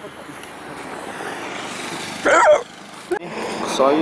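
Steady rushing noise of riding in a moving vehicle along a road, slowly growing louder. It is broken about two seconds in by a brief burst of a voice, then drops off suddenly, with a single click.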